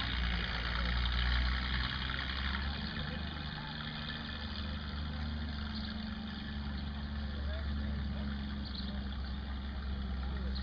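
A vehicle engine idling steadily, with faint voices in the background.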